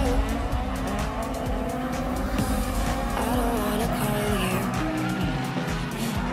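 Car engines revving and tyres squealing as two cars drift in tandem, with music playing over them.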